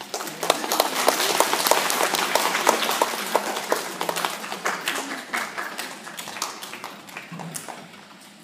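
Audience applauding: the clapping starts about half a second in, is at its fullest over the next couple of seconds, then thins and dies away.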